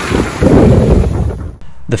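Sea surf washing in over the shore, a wave surging up about half a second in, with wind buffeting the microphone; it cuts off suddenly near the end.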